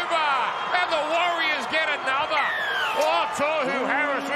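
Excited male television commentary calling a passing move in a rugby league match, the voices rising and sliding in pitch. A steady low tone starts near the end.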